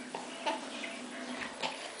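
Faint, small sounds of a baby being spoon-fed: a few soft, short noises from the spoon and the baby's mouth, about half a second in and again around a second and a half in, over a low hiss.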